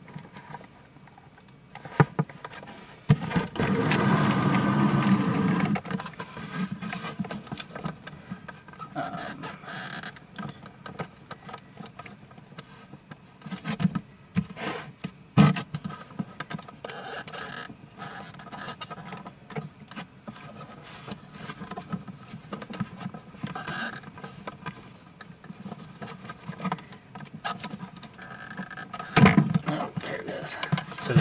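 Hand and hex-key handling noise inside the enclosed plastic body of a Tiko 3D delta printer: irregular clicks, knocks and scraping against plastic and metal parts. A louder steady rubbing noise lasts about three seconds a few seconds in.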